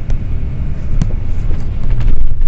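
Loud, continuous low rumble with a few sharp clicks, the strongest about a second in.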